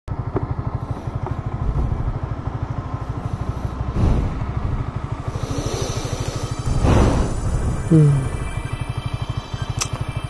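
Yamaha R15's single-cylinder engine idling with an even, rapid beat while the motorcycle stands still, with a sigh from the rider about eight seconds in.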